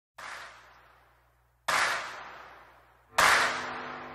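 Intro sound-effect hits for animated title text: three sharp, noisy impacts about a second and a half apart, each louder than the last and each fading out. The third leaves a sustained chord ringing underneath.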